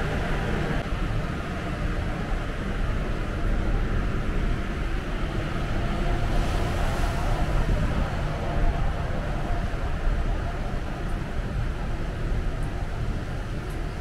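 Steady low rumble and hiss of open-deck ambience on a cruise ship, with no distinct events.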